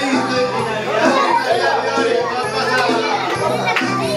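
Many children's voices chattering and calling out at once over music.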